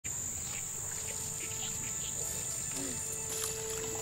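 Insects droning in the waterside vegetation: a steady high-pitched buzz, with faint sustained tones and a few light ticks beneath it.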